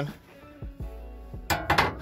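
Quiet background music, then about one and a half seconds in a short burst of sheet-metal rattling and scraping as a loose replacement B-pillar skin panel is handled against the car's pillar.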